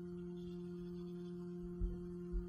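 Steady low hum made of two even tones, a deeper one and one about an octave above, with a soft low thump near the end.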